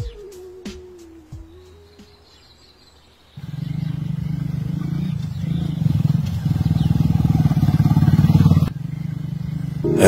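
Motorcycle engine running as the bike rides along. It starts suddenly a few seconds in, grows louder, and drops off abruptly near the end.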